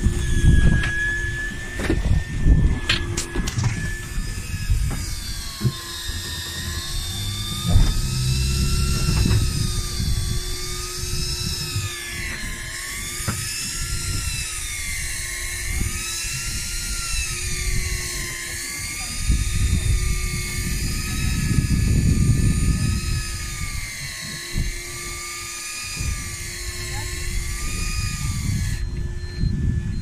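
Electric fishing reel's motor whining as it winds a hooked fish up from the bottom, its pitch rising and falling about every two seconds as the load on the line changes. It starts a few seconds in and stops near the end, over a steady low hum and wind rumble.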